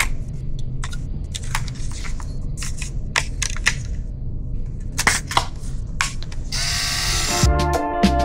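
Small clicks and snaps of a 35mm film cartridge being loaded into a compact film camera: the cartridge seating, the film leader handled and the camera back worked. Near the end, a rush of noise lasting about a second.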